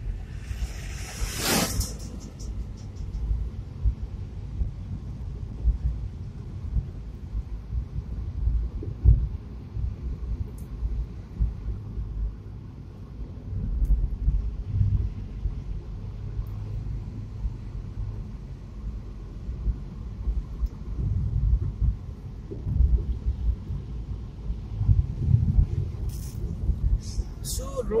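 Suzuki Swift hatchback driving along a mountain road, heard from inside the cabin as an uneven low rumble of engine and road noise. A short burst of noise comes about a second in.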